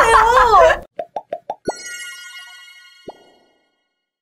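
Women's laughter that breaks off under a second in, then a cartoon sound effect: four quick popping blips, a bright ringing chime fading over about two seconds, and one more pop near the end.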